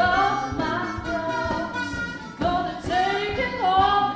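Small group singing a cappella gospel, a woman's voice leading over a low male bass baritone, with a harmonica playing along.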